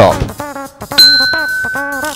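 A bell-like ding sound effect about a second in, one clear tone ringing on steadily, over light background music.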